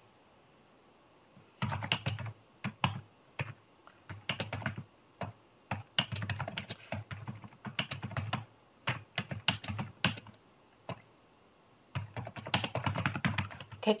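Typing on a computer keyboard: runs of quick keystrokes with short pauses between them, starting about a second and a half in.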